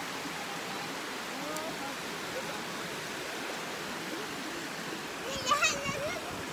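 Shallow rocky river running over stones, a steady rush of water, with faint distant voices and a voice near the end.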